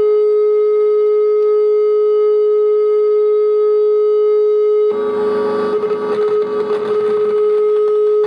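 MAU DIY synthesizer (Belgian Triple Project Synth) holding one steady drone note. About five seconds in, a rough, noisy buzz comes in over the held note as knobs are turned.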